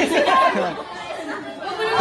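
Group chatter: several voices talking over one another.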